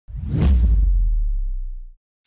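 Edited intro sound effect: a whoosh over a deep boom. The whoosh swells in and peaks about half a second in, and the low rumble fades steadily, cutting off after about two seconds.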